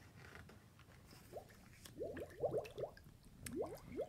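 Water drip and bubble sound effect: a string of short rising plops, a few at first, then several in quick clusters from about two seconds in. A soft paper rustle of a page turning comes at the start.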